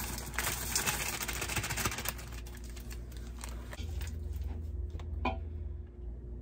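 White chocolate chips pouring from a plastic bag into a stainless steel pot: a quick run of small clicks and ticks that thins out after about two seconds. A few scattered clicks follow, one sharper near the end.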